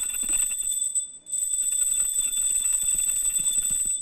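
A small metal puja bell rung rapidly and continuously, giving a steady high ringing. The ringing breaks off briefly about a second in, then resumes and stops abruptly near the end.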